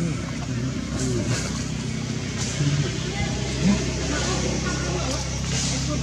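A steady low engine hum, like a vehicle idling, with indistinct human voices talking in the background.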